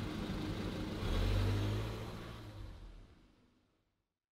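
A car passing in the street, a low rumble that swells about a second in and then fades away.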